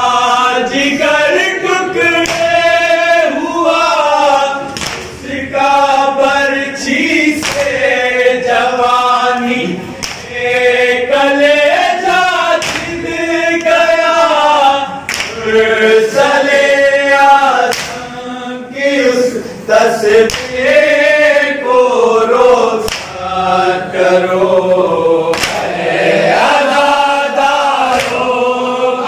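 A group of men singing a nauha (Urdu mourning lament) together, unaccompanied, in long sung lines with short pauses between them. Sharp slaps of chest-beating (matam) come through now and then.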